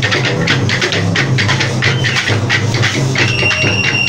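Bumba meu boi percussion in the matraca style: many wooden matracas clacking in a dense, fast rhythm over the pulsing beat of big frame drums. A long, steady whistle note starts about three seconds in.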